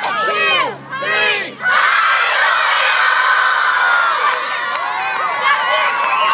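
A large crowd of schoolchildren shouting together on a count of three, then breaking into sustained loud cheering and yelling from about two seconds in.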